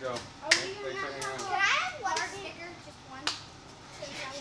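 Children's voices talking and calling out. Two sharp hand slaps from high fives cut through, one about half a second in and one near the end.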